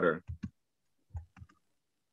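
A few short, separate clicks of computer keyboard keys being typed, two early and three in a quick group about a second later.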